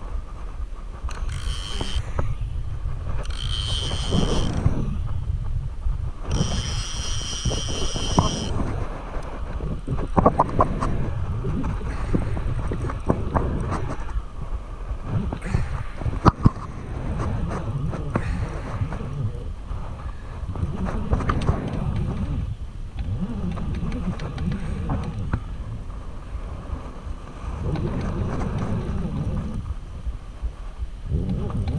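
Wind and handling rumble on a body-mounted camera microphone during the fight with a hooked channel catfish. In the first eight seconds a baitcasting reel's drag gives line in three short high whining bursts. A few sharp clicks follow later.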